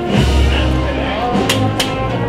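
A Spanish wind band (banda de música) playing a processional march: sustained brass and woodwind chords over a heavy low bass, with two sharp percussive strikes about a second and a half in.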